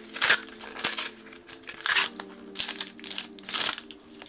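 A box of Polaroid Color SX-70 instant film being opened by hand and the film pack unwrapped, its packaging crinkling in about five short bursts.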